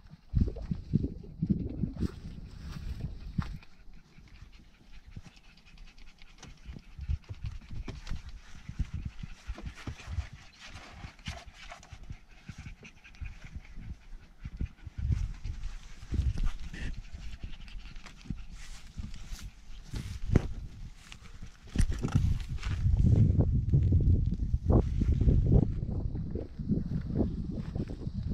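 Weimaraner puppies panting, with short sharp sounds scattered through, over a low rumble on the microphone that grows loudest in the last few seconds.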